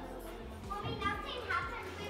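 Indistinct high-pitched voices, a child's among them, talking and calling out, loudest in the second half, over a steady low hum.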